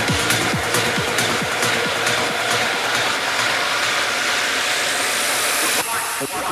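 Trance track in a build-up: the steady kick drum stops about a second and a half in, leaving a long hissing noise sweep over the music, which cuts off just before the end.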